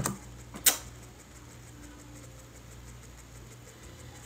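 A short sharp click less than a second in, then a quiet, steady low hum of room tone.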